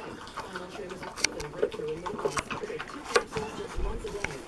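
A dog eating fast from a plastic slow-feeder bowl, with about three sharp clicks against the bowl. Faint voices talk in the background.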